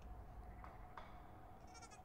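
A faint sheep bleat from a film trailer's soundtrack playing quietly, coming in near the end over a low hum.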